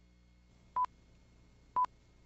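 Countdown leader beeps: two short, identical pure-tone beeps about a second apart, one for each number counted down.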